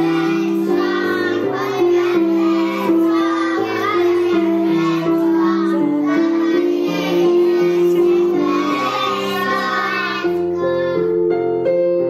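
Young children singing a song together over a keyboard accompaniment. About ten seconds in the singing stops and the keyboard plays on alone.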